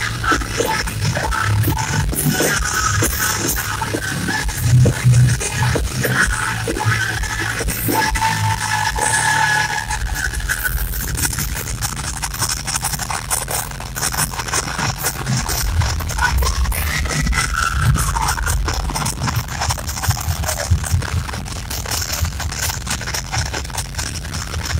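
Heavy metal band playing live through a loud PA, heard from among the audience, with a heavy, pounding low end. The music eases off a little about ten seconds in.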